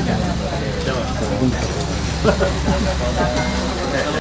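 Several people talking at once over a steady low hum.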